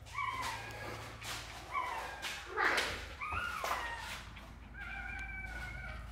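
Corgi puppy whining in short high-pitched whimpers, four of them, the last one drawn out for over a second near the end. A short burst of rustling noise comes about halfway through.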